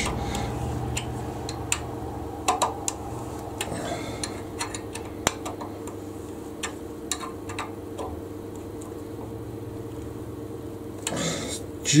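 Scattered small metallic clicks and ticks as a hex key turns a steel wood insert screw into the end of a wooden lathe arbour, over a steady low hum. Speech comes in near the end.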